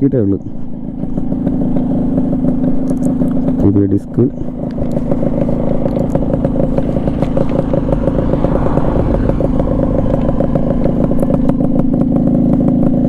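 A restored Yamaha RXZ's two-stroke single-cylinder engine idling steadily.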